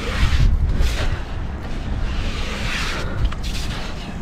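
A gloved hand scraping and digging in damp beach sand down a narrow hole, heard as bursts of gritty rustling, over a steady low rumble of wind buffeting the microphone.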